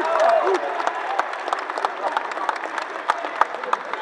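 Audience applauding, with a few shouting voices at first; the clapping thins out into scattered claps and fades toward the end.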